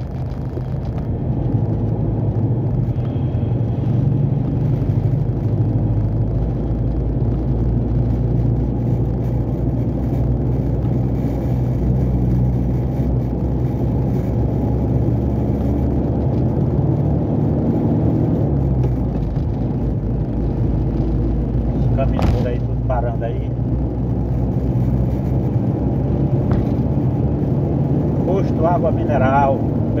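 A heavy truck's diesel engine drones steadily, heard from inside the cab while driving, with a low pitch that shifts a little as it goes. A single sharp click comes about 22 seconds in.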